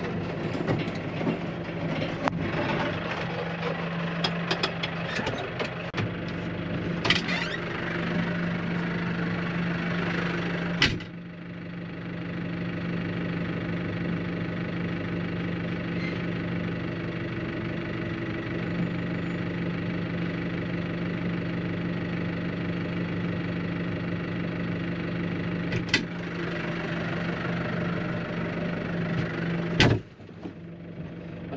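Tractor diesel engine idling steadily, heard from inside the cab. Over it runs a crackling rattle for the first third. A sharp clunk about eleven seconds in leaves the sound duller and quieter, and there are further clunks near the end, like the cab door shutting.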